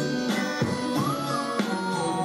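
Recorded music playing through a DiGiCo Quantum console channel, with the Mustard Tubes saturation switched to its overdrive mode.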